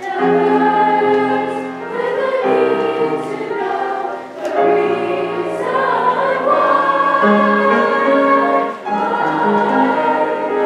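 A school choir of grades 4–8 children, mostly girls' voices, singing a song in phrases, with short breaks between phrases about two, four and nine seconds in.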